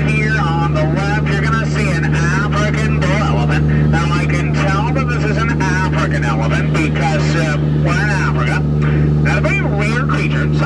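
Steady low engine drone of an open-sided safari truck on the move, with a guide's voice over the truck's loudspeakers running on top of it.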